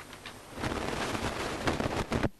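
Paper pages of a bound book being turned and leafed through: loud, crackly rustling that starts about half a second in.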